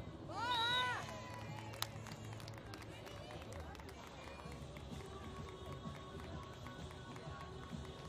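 A beach volleyball player's high-pitched shout as a point is won, rising and then held for about half a second. It is followed a second later by a single sharp slap, over a low murmur of crowd and background music.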